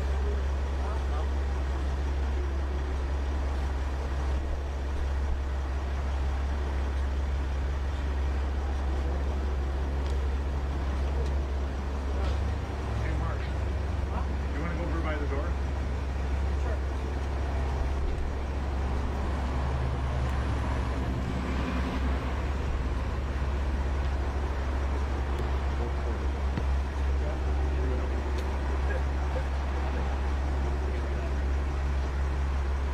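Steady low rumble of an idling vehicle engine with street traffic noise, and indistinct voices murmuring now and then.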